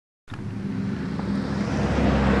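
After a moment of silence, a steady low vehicle hum with a hiss of road noise cuts in suddenly.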